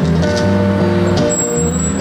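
Live band music: guitar chords over held bass notes in an instrumental passage of the song, with the chord changing about every half second.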